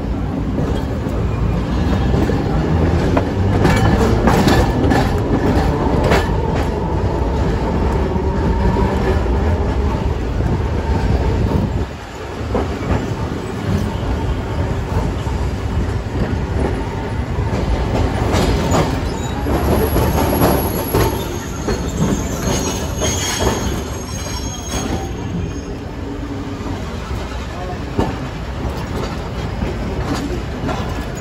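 Electric street tram in motion: its wheels rumble and clatter over the rails, with clicks and knocks from the track. A high-pitched wheel squeal comes in for a few seconds about two-thirds of the way through.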